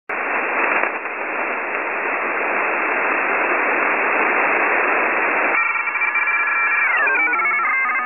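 Loud static hiss, narrow in range like audio over a telephone line. About five and a half seconds in it switches to a cluster of steady electronic tones, which slide down in pitch about a second later and then hop between pitches.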